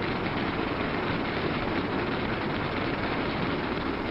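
A roomful of manual typewriters clattering together, a dense, steady stream of overlapping key strikes.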